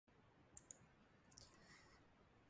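Computer mouse clicks against near silence: two quick sharp clicks about half a second in, then a fainter click about a second in.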